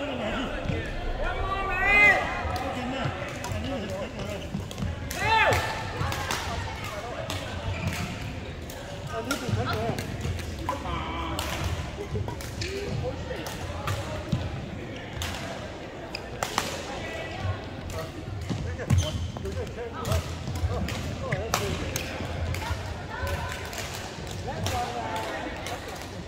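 Badminton rackets striking a shuttlecock in a large, echoing hall: sharp pops at irregular intervals during rallies, some from neighbouring courts. Sneakers squeak loudly on the court floor twice in the first few seconds, and voices are heard in the background.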